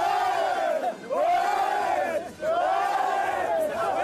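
A group of men shouting together in unison, three long swelling shouts in a row, each about a second long.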